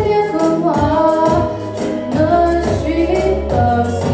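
A young female solo singer sings a song into a handheld microphone, her held and gliding notes over a backing track with a sustained bass line and a steady beat.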